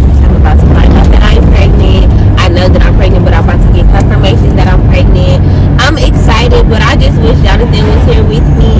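A woman talking inside a moving car over a loud, steady low rumble of road and engine noise in the cabin.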